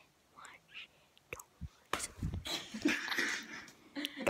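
A girl whispering breathily right up against the phone's microphone, loudest in the second half, with a few sharp clicks in between.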